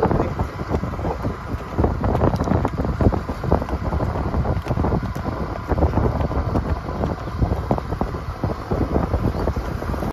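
Wind buffeting the microphone in a loud, uneven rumble, over the running noise of the vehicle carrying the camera along a dirt track.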